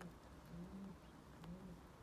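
A pigeon cooing faintly in the background: low coo notes repeated in short phrases.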